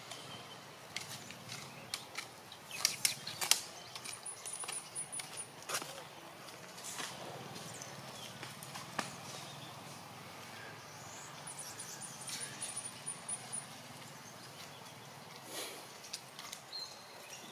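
Scattered crackles and rustles of dry leaves and plant stems as long-tailed macaques move about and tug at a leafy plant, loudest a few seconds in. A faint high chirping trill sounds twice in the background.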